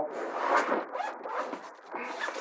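Zipper on a PISCIFUN fabric tackle backpack being pulled open along a pouch, in a few uneven pulls.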